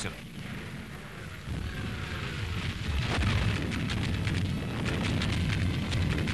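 Low rumble of explosions and artillery fire with crackling, a battle soundtrack, growing heavier about a second and a half in and again at three seconds.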